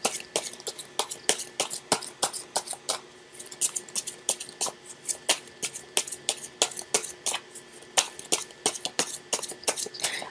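Tarot cards being shuffled by hand: an irregular run of light, sharp card clicks and snaps, several a second, with a short lull about three seconds in.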